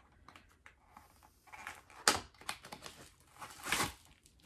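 Cardboard eyeshadow palette box being handled and opened by hand: light rustling, a sharp tap about two seconds in, and a louder scrape of paperboard near the end.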